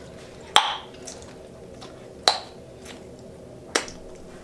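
Bubblegum bubbles popping: three sharp snaps about a second and a half apart, the first the loudest.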